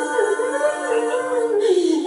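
A singer's voice sliding up and down in one long wavering glide, like a howl, over steady held notes from live-looped vocal layers.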